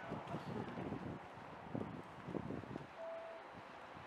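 Faint outdoor street ambience: a low, uneven background murmur with a few soft sounds in the middle and a brief steady high tone about three seconds in.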